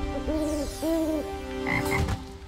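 Two croaks from a cartoon frog, each about half a second long, one right after the other, over held musical notes. Two short high blips follow near the end.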